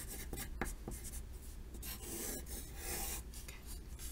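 Pencil writing on a paper worksheet. A few short strokes come first, then longer scratching strokes as a word is written out.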